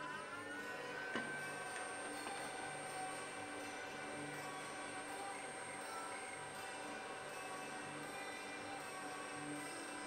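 Powered-up bench electronics giving off a steady electronic whine of several high tones over a low hum; one tone glides up and settles at the start, and a click about a second in brings in another tone.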